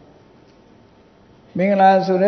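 A man's speech: a quiet pause of about a second and a half with only faint room noise, then his voice resumes near the end.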